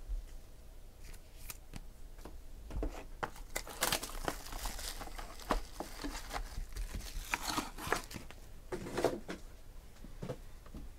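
Hands opening a white cardboard trading-card box and sliding out the foil-wrapped pack inside: quick cardboard scrapes and taps, with bursts of crinkling about four seconds in and again near the end.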